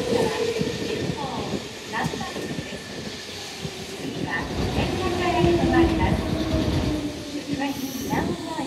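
Nankai 6300-series electric train pulling in and slowing along the platform, its wheels clacking over rail joints under a rumble, with a whine that falls slowly in pitch as it brakes.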